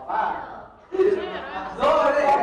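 Several people's voices shouting and calling out over one another, growing loudest near the end.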